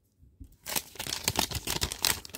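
A foil hockey card pack wrapper crinkling and crackling in the hands as it is handled, starting about half a second in after a brief hush.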